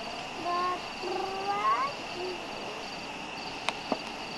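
A few short rising animal calls in quick succession, the last ones climbing higher, over a steady high-pitched buzzing background; two sharp clicks near the end.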